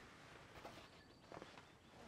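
Near silence: faint outdoor background, with a couple of faint, soft, short sounds about half a second and a second and a half in.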